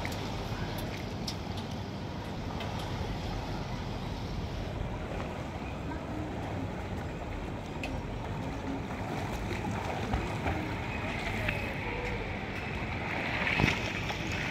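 Steady rumble of wind on the microphone with faint water splashing from a child swimming in a pool; the splashing grows louder near the end.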